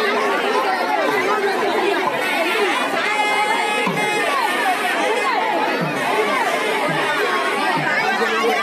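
A large outdoor crowd, many voices talking and calling at once. About three seconds in, a steady high pitched tone sounds over the crowd for about a second.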